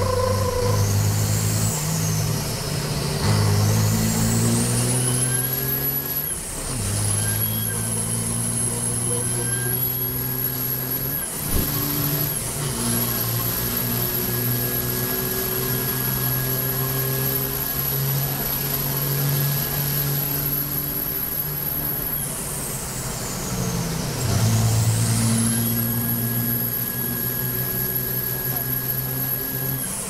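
Race truck's turbodiesel engine pulling hard on track, its pitch climbing through the gears and dipping briefly at shifts, with a high whistle over it that rises, holds, falls away about two-thirds of the way through as the driver lifts, and rises again a couple of seconds later.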